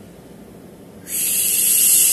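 A man's long breathy exhale, a loud hiss that starts about a second in and fades out with a falling tone.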